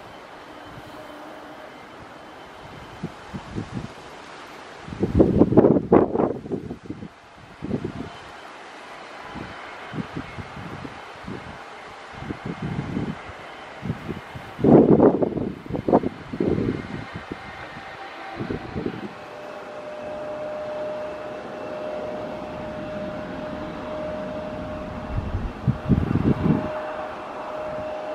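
Strong gusts of wind buffeting the microphone in loud, irregular bursts, over the steady noise of a jet airliner landing in gusty crosswind. A steady engine whine joins in over the last several seconds.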